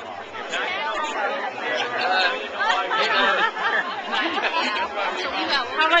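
Chatter of several people talking at once around an outdoor crowd.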